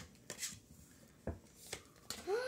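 Trading cards being laid down and slid on a wooden tabletop: a few brief, faint taps and swishes.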